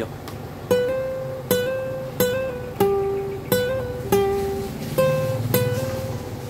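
Nylon-string classical guitar playing a slow single-note melody, about eight plucked notes that each ring out, some of them sounded by hammering the fretting finger down onto the string just after the pluck (hammer-ons).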